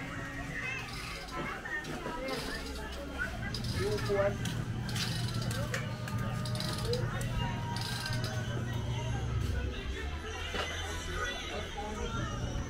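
Busy alley ambience: residents' voices in the background with music playing somewhere nearby. A low steady hum comes in about two and a half seconds in and stops about ten seconds in.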